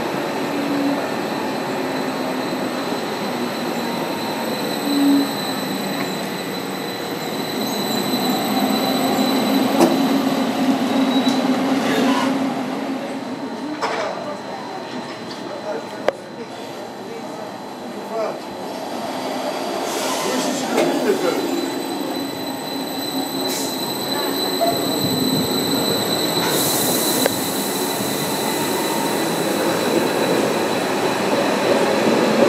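Eurobahn Stadler FLIRT electric multiple units running through a station platform, first one pulling away, then another drawing in close alongside. Steady rolling rumble with a thin, steady high whine, a few clicks, and a burst of hiss near the end.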